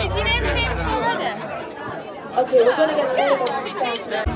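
Close-up chatter of several people talking over one another in a large hall, with a band's bass line heard under it for about the first second before it drops out.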